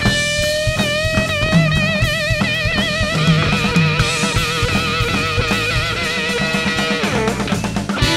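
Live funk band in an instrumental break: an electric guitar on a Stratocaster-style guitar bends up into one long held note with wide vibrato, and the note drops away near the end. Bass guitar and a drum kit beat run underneath.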